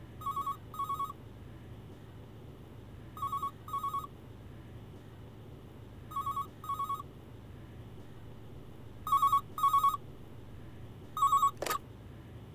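Landline telephone ringing in a double-ring pattern: pairs of short warbling rings about every three seconds, five times. The last ring breaks off near the end as the handset is lifted.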